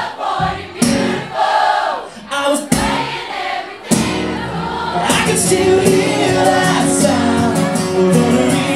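Live pop-country band music with singing, the audience singing along. The first half is sparse, broken by a few sharp hits, and the full band fills in about halfway through.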